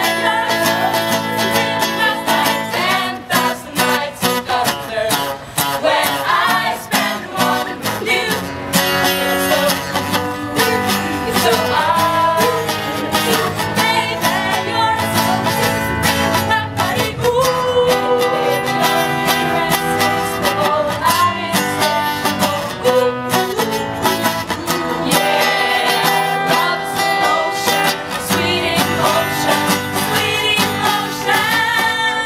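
A steel-string acoustic guitar strummed as accompaniment to a group of voices singing together, live and unamplified-sounding, a Christian pop song by a youth choir.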